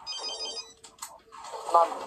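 Mobile phone ringtone: a rapid electronic trill of high beeps that stops under a second in, when the call is answered.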